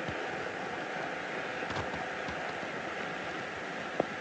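Steady hiss of background noise, even and unchanging, with no beat or melody.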